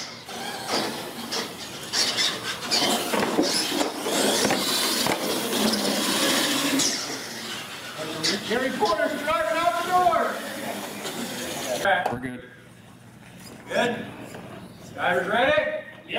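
Two radio-controlled monster trucks racing, with their motors whining and tyres rattling and clattering over the track for several seconds. Voices follow, then a quieter stretch with a few more voices.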